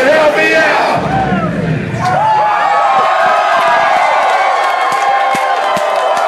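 Concert crowd cheering and yelling as the hip-hop backing track stops about two seconds in, with many voices shouting over each other and scattered claps.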